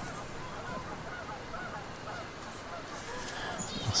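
Many short, repeated animal calls in the distance over a steady outdoor background, with a higher thin call about three seconds in.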